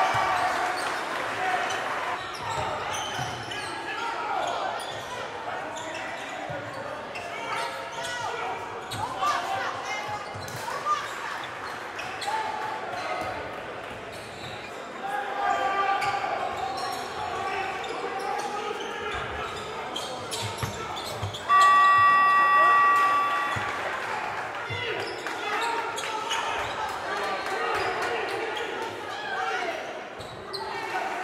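Live sound of a basketball game in a gym: a ball bouncing on the hardwood court amid players' and spectators' voices. About two-thirds of the way in, a loud electronic buzzer sounds for about two seconds.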